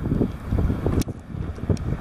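Detroit DD15 inline-six diesel of a Freightliner 122SD tractor running as the truck rolls slowly past, a low rumble heavily buffeted by wind on the microphone. A single sharp click about a second in.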